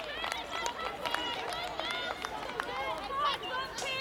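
Women's voices shouting and cheering just after a goal, many short high calls overlapping, with a few sharp clicks scattered through.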